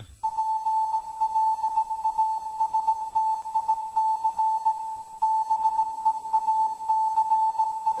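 A single steady electronic tone held at one fairly high pitch, fluttering unevenly in loudness like a radio signal, forming the intro of the track before the music comes in.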